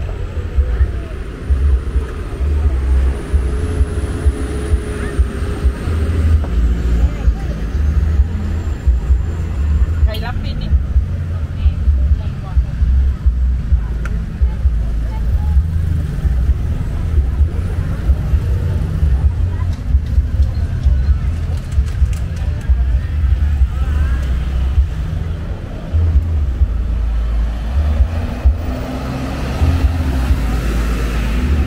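Busy street ambience: background chatter of people mixed with passing motorbikes and cars, over a constant low rumble.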